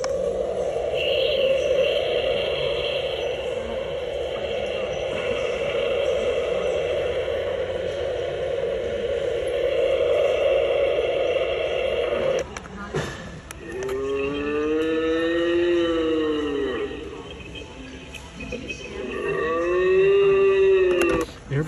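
Recorded spooky sound effects played through an animated Halloween jack-o'-lantern prop's small speaker, set off by its Try Me button. A steady rough drone runs for about twelve seconds and stops, then long voice-like calls rise and fall in pitch, twice.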